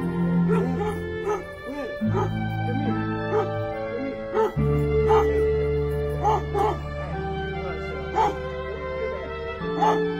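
A dog gives short, arched high cries about once a second, over slow background music with held chords.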